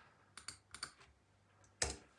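A handful of light clicks at a computer's keys or trackpad in the first second, then one louder click near the end, as a web page is refreshed.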